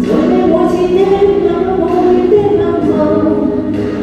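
A woman singing a Cantonese pop ballad into a handheld microphone over instrumental accompaniment with a soft, regular beat.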